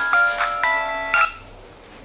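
Mobile phone ringtone playing a melody of short stepped notes, cutting off just over a second in as the call is answered.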